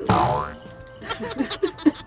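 A cartoon-style boing sound effect falls in pitch over about half a second at the start. Quieter background music plays under it.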